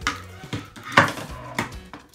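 Hard plastic toy parts knocking and clattering on a table as they are handled, with about four sharp knocks, the loudest about a second in.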